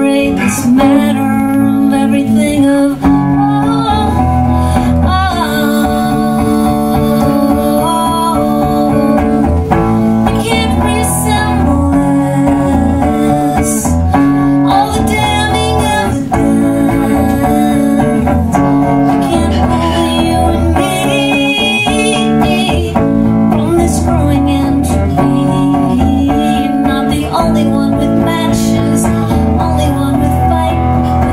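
Live song: a solo electric guitar strummed with a pick, with a woman singing over it.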